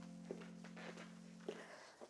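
Soft background music fading out: a held chord dies away just before the end, with two faint taps along the way.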